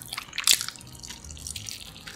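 Close-miked chewing of sticky, sauce-coated Korean seasoned fried chicken (yangnyeom chicken): wet, smacking mouth sounds with irregular crackly clicks, the loudest about half a second in.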